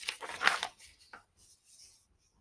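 A page of a picture book being turned by hand: a short papery rustle in the first half-second or so, then a few faint handling sounds as the page settles.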